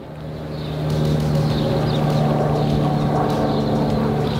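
A motor running at a steady pitch, a low hum with harmonics over a rumbling noise, growing louder over about the first second and then holding steady.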